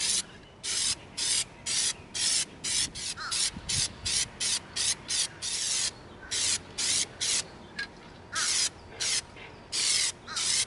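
Plasti-Dip rubber-coating aerosol spray can being sprayed in quick short bursts of hiss, two or three a second, with a brief pause about eight seconds in.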